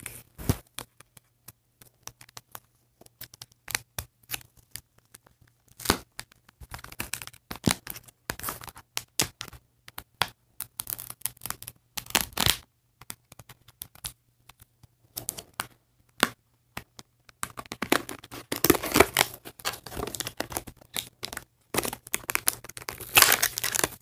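Toy packaging being torn and crinkled open by hand: irregular rips and crackles, sparse at first, then in denser bursts in the middle and again near the end.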